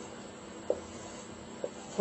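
Marker pen writing on a whiteboard: a faint rubbing with two small ticks, about a second apart.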